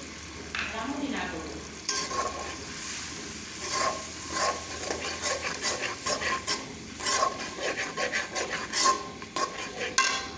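A long metal spatula scrapes and stirs onions and spice paste frying in hot oil in a large metal pan, with a steady sizzle underneath. From about two seconds in, the scrapes against the pan come about twice a second.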